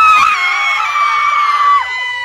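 Several children screaming together in one long, high-pitched shriek; one voice drops away near the end while another holds on a little longer.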